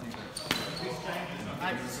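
A single sharp metallic clack of steel training swords meeting, about half a second in, with a brief high ring after it.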